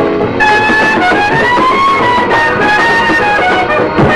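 Lively old jazz dance music from a band, a lead instrument playing long held notes over a busy rhythm accompaniment.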